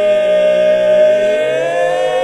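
Barbershop quartet singing a cappella in four-part harmony, holding a loud sustained chord without words that moves to a new chord near the end.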